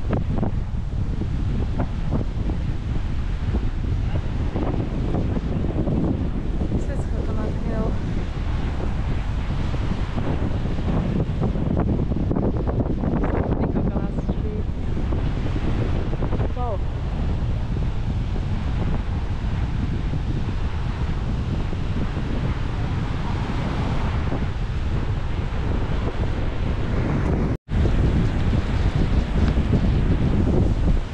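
Wind buffeting the microphone, with a steady wash of ocean surf underneath. The sound cuts out for an instant near the end.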